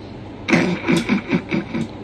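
A person's voice speaking quietly over a low steady hum, starting about half a second in.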